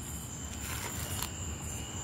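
Crickets trilling steadily, with a low rumble and faint rustling from the phone being handled against the dog's harness.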